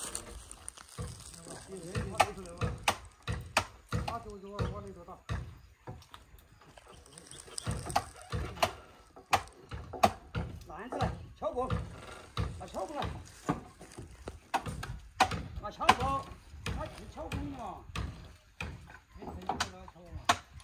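Irregular sharp wooden knocks as crossbeams are fitted into the posts of a traditional timber house frame, mixed with workers' voices calling to one another.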